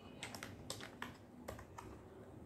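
Plastic Magic Bricks building pieces clicking against each other as they are pressed and fitted together by hand: a faint series of about six light clicks.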